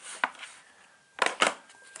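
A small click, then about a second later a quick cluster of sharp knocks and rattles from a hand handling the leads and items beside the power inverter.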